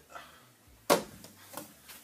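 A single sharp slap or knock about a second in, against quiet room tone.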